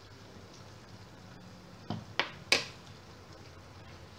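Three quick, sharp knocks of kitchen utensils against a nonstick pan, close together about two seconds in, the last the loudest, over a faint low hum.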